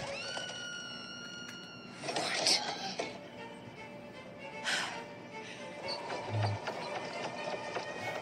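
Animated film soundtrack playing quietly through a tablet's speaker: music with a held high note for about two seconds, then a few short sound-effect hits and a brief low thud.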